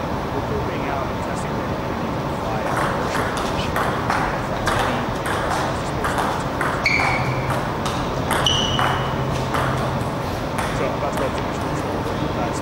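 Table tennis rally: the plastic ball clicking off rubber-faced bats and the table in a quick run of sharp clicks, about two to three a second, stopping near the end. Two short high-pitched squeaks come in the middle of the rally.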